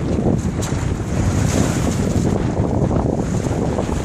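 Steady wind noise buffeting the microphone, with water rushing along the hull of a sailboat heeled over in 20 to 22 knots of wind.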